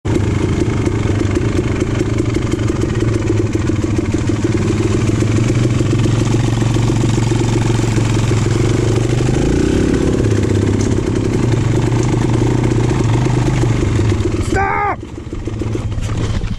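A dirt bike engine running steadily on a trail, its pitch wavering briefly midway. About a second and a half before the end, the engine sound drops off suddenly and a person yells briefly.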